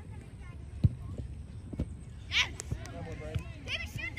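Youth soccer players shouting high-pitched calls across the field, with one sharp knock just under a second in and a steady low wind rumble on the microphone.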